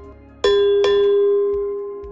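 Bell-like notification chime sound effect of a subscribe-button animation. It is struck sharply about half a second in and again a moment later, and rings on with one clear pitch, slowly fading.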